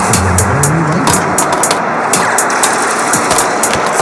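Electronic synthpop instrumental from a software synthesizer and 808-style drum machine: hi-hats tick in a steady quick rhythm over a dense synth wash. In the first second a low synth line glides up and down.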